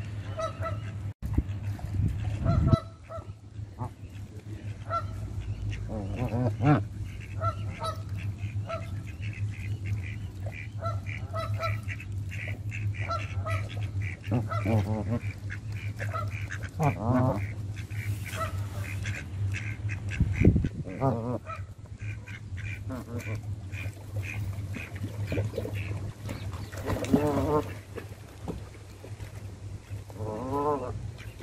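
Canada geese calling throughout: a steady run of short honks, with a few longer, louder honks, over a steady low hum and a couple of low thumps.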